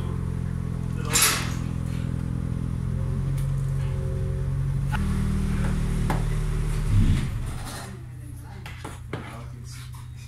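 A motor vehicle engine running steadily, its note shifting about five seconds in, then cutting off about seven seconds in. A short hiss comes about a second in.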